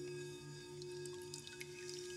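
Soft ambient meditation music built on sustained, singing-bowl-like ringing tones. A low tone swells and fades about twice a second, and faint high pings like droplets are scattered through the second half.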